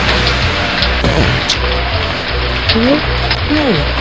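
Steady hiss of pouring rain over background music with a repeating low bass beat. A few short rising and falling tones slide through it.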